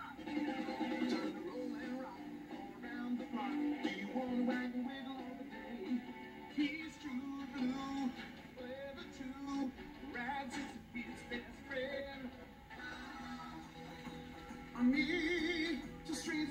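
A children's band song with singing over backing music, playing from a VHS tape through a television's speaker in a small room.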